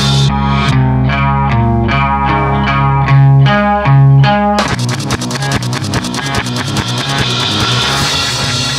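Late-1960s psychedelic rock instrumental passage: a run of single picked guitar notes over low held bass notes, muffled with the treble cut. About four and a half seconds in, the full band comes back abruptly with a dense, fast-pulsing texture.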